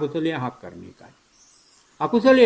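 A man giving a Buddhist sermon in Sinhala. His voice trails off about half a second in with a few short syllables, then comes a quiet pause of about a second.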